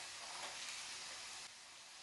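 Faint crunching of a bite of crisp battered fried fish being chewed, stopping about one and a half seconds in.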